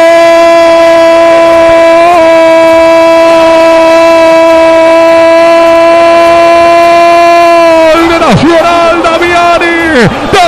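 A football commentator's long goal cry, a drawn-out "gooool" held loud on one steady high pitch for about eight seconds, marking a goal just scored. Near the end it breaks into shorter shouted words.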